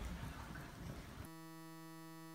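Faint room noise of a lecture hall with a low rumble and light rustling, cut off abruptly about a second in by a steady electronic buzzing tone that holds unchanged.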